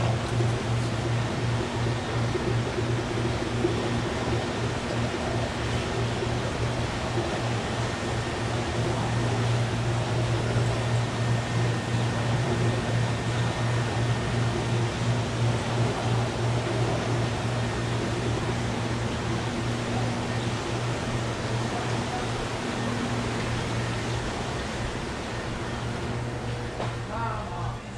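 Steady hum and rushing, bubbling noise from the filters and air pumps of rows of aquarium tanks, with a constant low electrical hum underneath.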